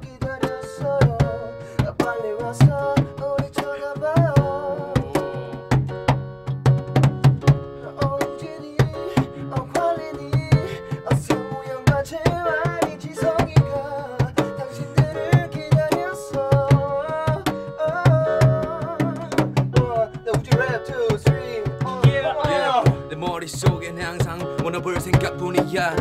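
Portable electronic keyboard playing an improvised tune over its built-in drum rhythm, with a steady percussive beat under held chords.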